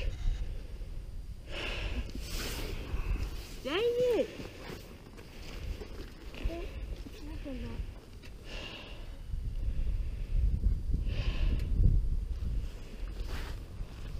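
Low, fluctuating rumble of wind on the microphone, with a few short breath-like hisses. A distant voice calls out once about four seconds in, and there are faint murmurs later.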